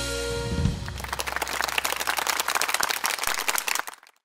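A song's final sustained chord dies away in the first second, followed by audience applause that cuts off suddenly just before the end.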